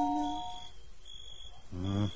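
Soft music fades out, then a smoke alarm sounds: a faint high tone comes and goes, and a loud low beep starts near the end.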